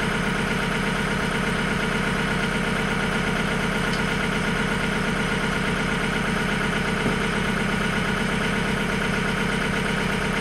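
A John Deere utility tractor's diesel engine idling steadily, with a small tick about seven seconds in.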